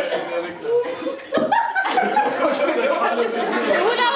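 Group of men laughing and chuckling amid indistinct talk, with a short lull a little over a second in.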